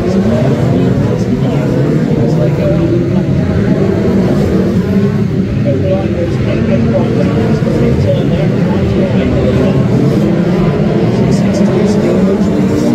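A pack of Brisca F2 stock cars racing on the oval: several engines running together, their pitches rising and falling as the cars accelerate and lift off round the track.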